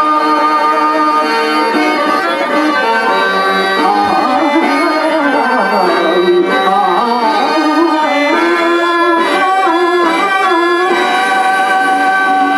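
Harmonium and tabla accompaniment in Telugu padya natakam style. Held harmonium notes give way about two seconds in to a wavering, ornamented melody, which settles back into steady held notes near the end.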